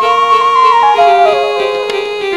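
Live music from a small folk ensemble of harmonium, keyboard, bamboo flute and hand drum: a held melody note near the start that steps down in pitch over the two seconds, over sustained accompaniment.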